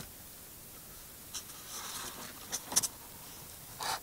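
Quiet handling noise: faint rustling and a few light clicks, the loudest a pair of sharp clicks a little past the middle, over a low steady background.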